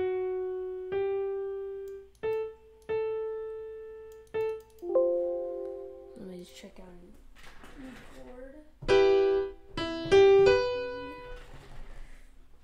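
Sampled grand piano in FL Studio sounding one note at a time as notes are placed in the piano roll: about five separate notes in the first four and a half seconds, each fading out, then a chord at about five seconds. Near the end come two louder, brighter chords.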